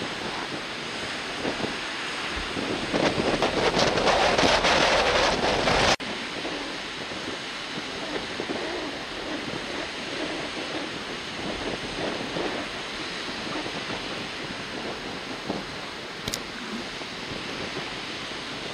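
Strong wind on the microphone over rough surf, swelling louder for a few seconds and cutting off abruptly about six seconds in. After that, a steadier, lower rush of wind and sea.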